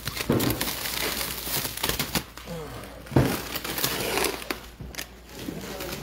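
Plastic stretch wrap crinkling and tearing as it is pulled off a pallet of cardboard boxes, with scattered sharp crackles and knocks.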